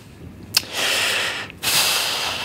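A man's close-miked breathing: a click of the lips, a sharp breath in, then a long, heavy breath out like a sigh.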